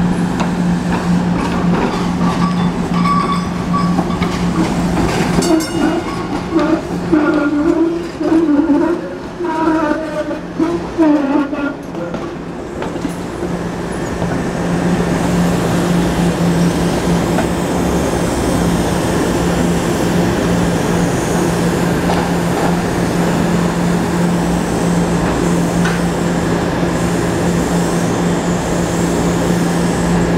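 SEPTA trolleys at a tunnel portal: a trolley's steady hum as it pulls away into the tunnel, fading. About halfway through, a rumble and hum build up as the next trolley comes out of the tunnel toward the portal.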